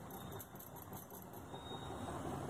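Faint dripping of water from a perforated steel strainer of parboiled basmati rice, a soft pattering over low background hiss.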